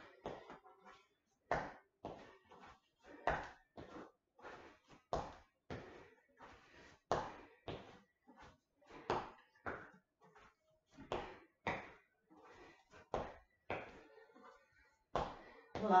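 Feet landing on the floor during repeated lunge-back-and-hop-up jumps, a sharp thud about every two seconds with lighter footfalls between.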